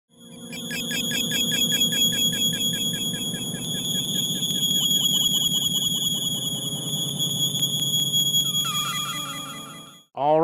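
Electronic synthesizer intro music: a fast run of repeated notes over a steady high whistling tone. It fades in during the first second and fades out near the end.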